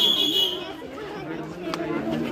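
People's voices chattering, with a brief high-pitched tone in the first half second.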